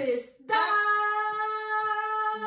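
A woman's voice singing one long note held at a steady pitch, starting about half a second in after a brief pause.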